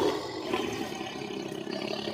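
A recorded animal-roar sound effect played from a podcast soundboard, its rough, noisy tail fading away, with a short laugh at the start.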